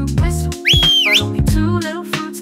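A single short whistle, about half a second long, that slides up, holds, dips and slides up again, over upbeat children's-song backing music with a steady bass beat.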